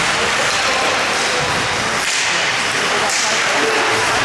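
Ice hockey rink ambience during play: indistinct chatter from spectators over a steady hiss, with a couple of brief skate scrapes on the ice about two and three seconds in.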